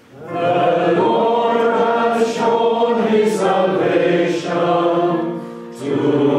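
A congregation sings the psalm response together. Many voices come in at once just after the start, replacing a single voice, and there is a short pause for breath near the end before the singing picks up again.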